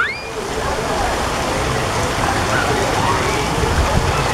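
Steady rush of running and splashing water in a water-park splash pool, with faint voices in the background.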